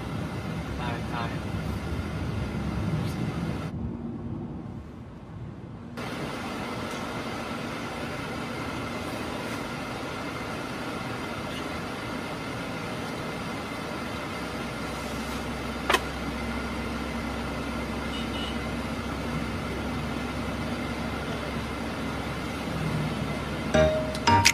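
Steady cabin noise inside a van crawling in a traffic jam: a low hum of the engine and road with a faint steady tone, and a single sharp click about sixteen seconds in.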